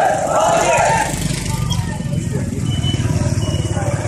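Motorcycle engine running close by, a steady low pulsing, with marchers' voices over it, loudest in the first second.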